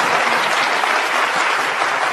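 Large audience applauding steadily, many hands clapping at once.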